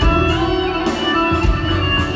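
Live band music led by guitar, with low beats underneath, in a passage without singing.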